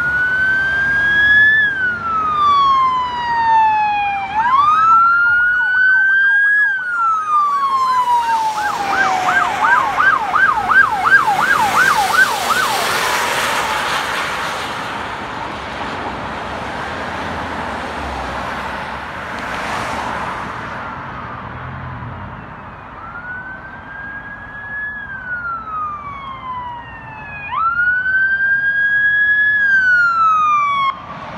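Electronic emergency-vehicle siren on a slow rising and falling wail, which switches to a fast yelp of about five warbles a second for a few seconds. Then comes a stretch of road-traffic rush without the siren, and the wail starts again near the end as a fire engine approaches.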